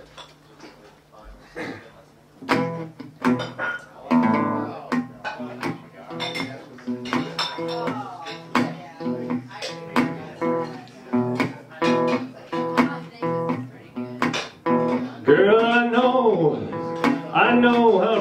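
Metal-bodied resonator guitar played in a blues style, plucked notes starting about two and a half seconds in after a near-quiet opening. Near the end a man's singing voice comes in over the guitar, and the level rises.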